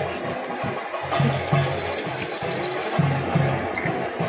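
Theyyam percussion: chenda drums beating a repeated rhythm of deep strokes, two to three a second, under a dense ringing wash of elathalam cymbals.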